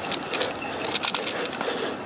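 Footsteps pushing through dry heath scrub: twigs and dry stems crackling and brushing against the walker in a run of small, irregular clicks.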